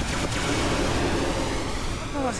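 Steady rushing background noise with no clear pitch.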